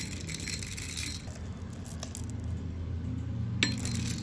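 Roasted coffee beans tipped from a metal spoon clatter and clink into the stainless-steel hopper of a manual coffee grinder, with a sharper clink of spoon or beans on the metal near the end, over a low steady hum.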